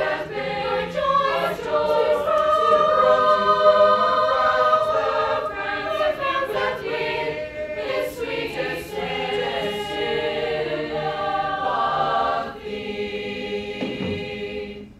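Mixed choir of young voices singing in harmony, loudest through the middle, then dropping to a softer held chord near the end.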